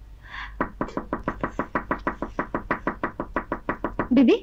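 Rapid, evenly spaced knocking at a door, about eight knocks a second, starting about half a second in: someone at the door.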